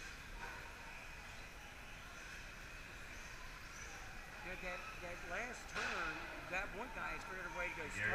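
Electric radio-controlled short course trucks running on a dirt track, heard as a faint steady high whine. Voices are talking over it from about halfway through.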